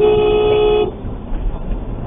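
A vehicle horn sounds once, a steady blast held for just under a second and cut off, over the low rumble of a car driving on the road.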